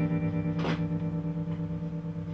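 A guitar's final chord ringing out and slowly dying away, its level pulsing slightly as it fades. A short soft hiss comes about a third of the way in.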